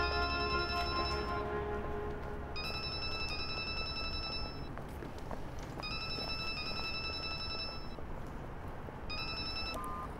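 A mobile phone ringing: a high electronic ringtone of several steady tones, sounding in bursts of about two seconds roughly every three seconds. Background music fades out under the first ring.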